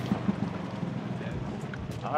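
Dune buggy engine running with a steady low hum, under a rough rushing noise of tyres rolling over gravel, heard from inside the open cab.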